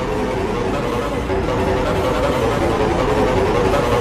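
Several video soundtracks playing over one another at once: overlapping voices, music and noise in a dense, unbroken jumble.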